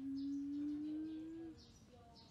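A person humming one long, slightly rising "hmm" that stops about one and a half seconds in, with faint high bird chirps repeating in the background.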